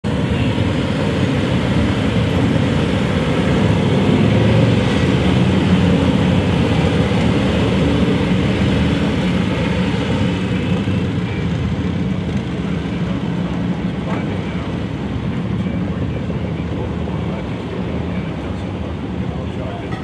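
Engines of a police motorcade passing close by, motorcycles and SUVs running steadily as they roll past. It is loudest about four to eight seconds in and eases slightly toward the end.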